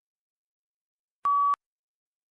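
A single short electronic beep, one steady high tone lasting about a third of a second, from a computer-based test's recording prompt: it signals that the answer recording has started.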